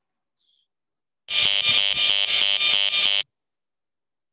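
A cordless phone's radio signal made audible: a bouncing buzz with a very regular rhythm, starting about a second in and cutting off abruptly about two seconds later. A cell antenna whine sits behind it.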